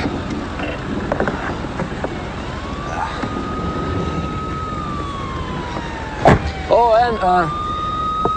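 A siren wailing slowly: it rises, holds, falls off about five seconds in, then rises again, over a steady background hum. About six seconds in there is a single sharp knock, followed by a short vocal sound.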